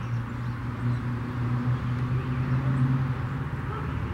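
A low, steady motor hum that swells slightly and then stops about three and a half seconds in.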